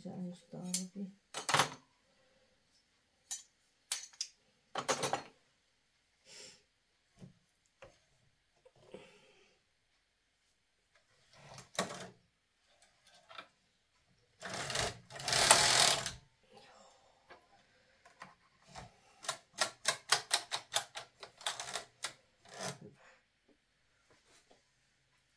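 KH 230 knitting machine being worked by hand: scattered clicks and clacks of metal parts at the needle bed, one longer, louder run of the carriage sliding along the bed about halfway through, then a quick rapid series of clicks near the end.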